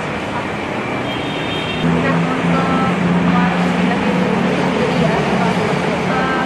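Steady road traffic noise, with a motor vehicle's engine hum growing louder about two seconds in and fading near the end. Voices talk faintly underneath.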